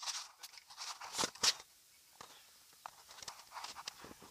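Handling noise from a phone being moved against clothing: scattered rustling and light knocks, with a brief drop to near silence about two seconds in.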